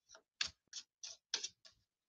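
Faint keystrokes on a computer keyboard: a run of uneven, short clicks, about three a second.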